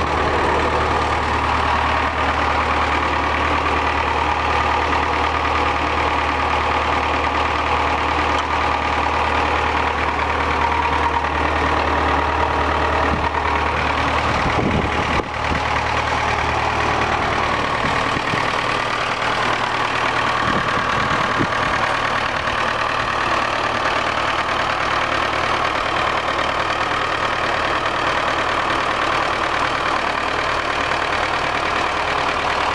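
1967 Farmall 504's four-cylinder diesel engine idling steadily.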